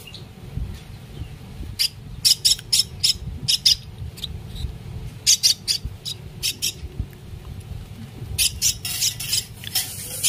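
Common myna chick giving short, harsh begging calls in quick runs of several at a time, busiest near the end while it gapes for food.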